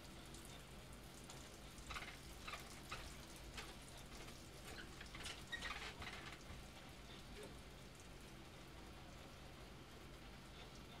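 Faint, irregular spattering of urine onto a cello, heaviest between about two and six and a half seconds in, over a steady low electrical hum.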